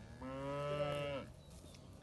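A cow mooing once: a single low call about a second long that drops in pitch as it ends.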